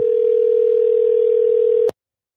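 Telephone ringback tone over the call-in line: one steady, loud tone lasting about two seconds, the ring of an outgoing call to the caller, cut off with a click near the end.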